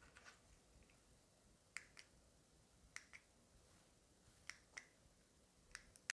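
Near silence: room tone with a few faint, short clicks, coming in three quick pairs and then a single click near the end.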